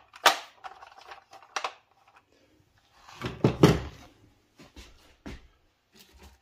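Hard plastic toy tank parts clacking and knocking as they are handled and set down: a few separate sharp clicks, with one heavier thump about three and a half seconds in.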